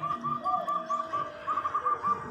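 A bird calling in a fast run of short, repeated high chirps, about five a second, pausing briefly in the middle before resuming.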